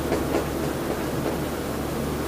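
Marker pen writing on a whiteboard: a few light, irregular scratching strokes over a steady low room hum.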